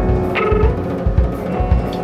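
Band music: a drum kit keeps a steady bass-drum pulse, about three beats a second, under held chords.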